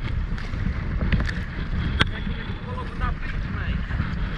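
Strong wind buffeting the microphone over the splash and wash of rough sea around a paddled kayak, with one sharp knock about halfway through.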